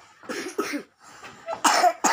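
A person coughing: a couple of short coughs about half a second in, then a louder, harsher cough near the end.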